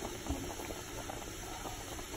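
A pot of water at the boil with lasagna noodles in it, bubbling steadily with a fine crackle of small bursting bubbles.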